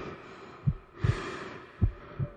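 Deep heartbeat sound effect in a film teaser soundtrack: low double thumps about a second apart, with a soft rushing hiss swelling between them.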